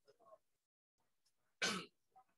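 A man clears his throat with one short cough near the end, after a few faint murmured sounds at the start.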